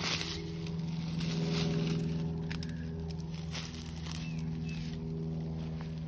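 A steady low hum, with a few faint ticks and rustles of dry leaves.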